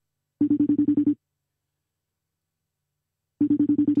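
A telephone ringing on an outgoing call that has not yet been answered: two short trilling rings about three seconds apart.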